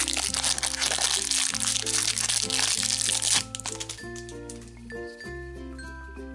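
Clear plastic wrapper crinkling and crackling as it is pulled open by hand, for about the first three and a half seconds, over light background music that then carries on alone.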